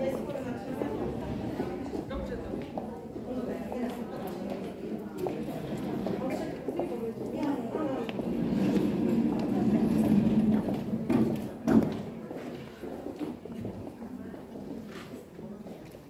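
Indistinct talking from several people, with footsteps on hard paving and a single sharp knock about three-quarters of the way through.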